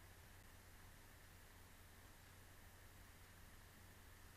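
Near silence: faint steady hiss and low electrical hum of a desktop microphone's room tone.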